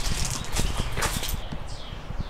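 TVS auto rickshaw's single-cylinder engine idling, a quick, even chugging with light rattles over it.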